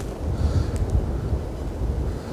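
Wind buffeting the microphone outdoors: an uneven low rumble, with a couple of faint clicks just under a second in.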